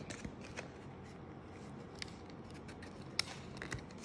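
Faint, scattered small clicks and light handling noise from a plastic tray of false strip lashes, a handful of sharp ticks with the loudest about three seconds in.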